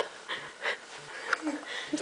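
Faint breathy vocal sounds with a few soft short noises in between, much quieter than the talking around them.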